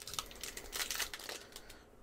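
Foil wrapper of a Pokémon Champion's Path booster pack crinkling and tearing as it is pulled open: a run of quick crackles that dies away near the end.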